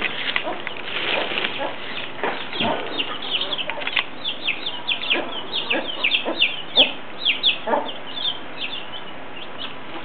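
Domestic chicks peeping, many short falling chirps in quick succession, thickest in the middle of the stretch, with a few lower clucks from the mother hen.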